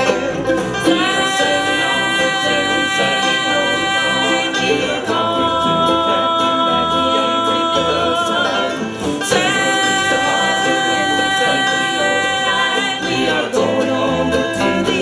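Live bluegrass gospel band playing an instrumental passage between sung lines: acoustic guitars and electric bass under a lead of long held melody notes.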